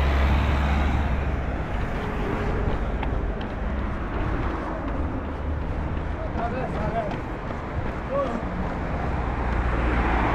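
Steady road traffic noise with wind rumbling on the microphone, the rumble strongest in the first second or so.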